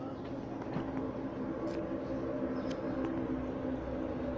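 A steady mechanical hum of a running machine, with a few faint clicks over it.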